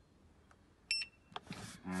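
A single short high electronic beep from the PROTEAM Inverter iX heat pump's LCD control panel about a second in, as the clock button is held for three seconds to cancel the timer; a light click follows.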